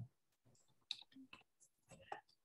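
Computer keyboard typing: a few faint, quick keystroke clicks as a word is typed in.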